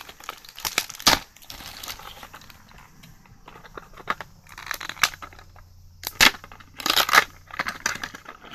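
Clear plastic packaging bag crinkling and crackling in the hands as it is opened, in irregular bursts with sharper, louder crackles about a second in and again near the end.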